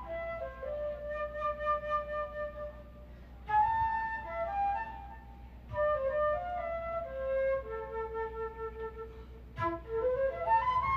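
A concert flute playing a single melodic line in four phrases with short pauses between them, some ending on long held notes.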